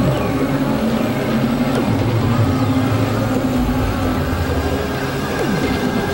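Experimental electronic noise music from synthesizers (Novation Supernova II and microKorg XL): a dense, noisy drone with held low tones, crossed by several quick downward pitch sweeps.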